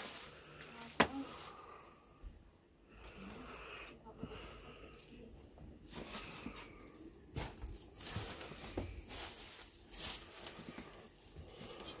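Quiet movement and handling noise: scattered clicks, crackles and rustles, with one sharp click about a second in.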